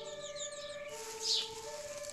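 A two-tone siren alternating between a higher and a lower note, with small birds chirping in short falling calls about once a second.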